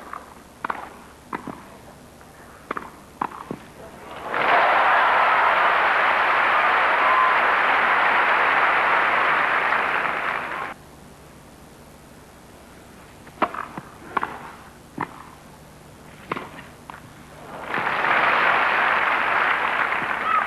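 Tennis ball struck by rackets in a grass-court rally, a handful of sharp hits about half a second apart, then crowd applause for about six seconds after the point. A second rally of hits follows about two-thirds of the way in, and applause rises again near the end.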